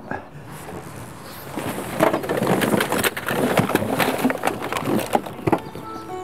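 Papers, cards and small objects rustling and clattering as they are tipped from a cardboard box into a metal skip. A dense jumble of rustles and knocks starts about two seconds in and lasts around three and a half seconds.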